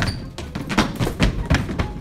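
A quick run of thumps and knocks, several a second, over light background music.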